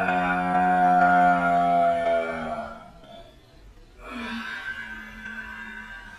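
A woman's voice holding one long, steady, wordless note that ends about two and a half seconds in, then a second, quieter drawn-out vocal sound from about four seconds in.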